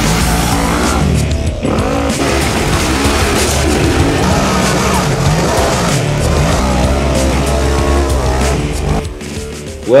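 A UTV race buggy's engine revving up and down hard as it climbs a muddy hill, mixed with background music. The sound drops away shortly before the end.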